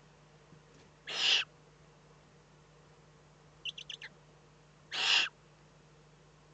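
Eurasian eagle-owl chicks giving raspy, hissing begging calls: two harsh hisses about four seconds apart, with a quick run of four short high squeaks between them. A steady low hum runs underneath.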